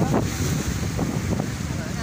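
Strong wind buffeting the microphone over small waves washing against a seawall.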